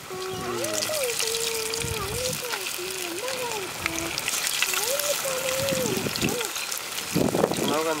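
Mackerel pieces coated in masala sizzling and crackling in hot groundnut oil in a clay pot as more pieces are slid in. Under the frying a wavering voice-like tone, like humming, runs through most of it.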